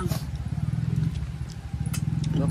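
A motor running steadily: a low hum with a rapid, even pulsing.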